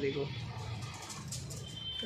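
Pigeons cooing, a low rough 'khar khar' sound, heard faintly in the pause after a spoken word.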